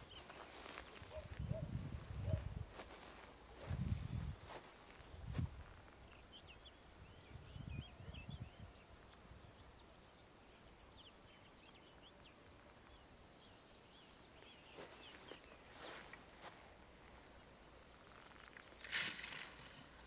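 An insect chirping in a high, even trill of about three pulses a second, with low bumps in the first few seconds. About a second before the end comes a short swish as the RC glider touches down and slides into the grass.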